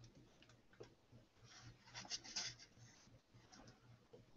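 Near silence with faint, irregular clicks and rustles and a short, louder rustling about two seconds in, over a faint steady low hum.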